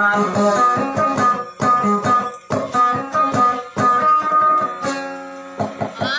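An acoustic guitar plays a solo melodic line of quickly picked notes with no voice, easing off in the last second.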